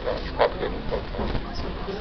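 Indistinct background voices over a steady low hum of a busy room, with a brief sharp sound about half a second in.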